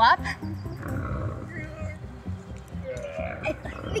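Background music under a drawn-out, low animal growl: a dinosaur sound effect.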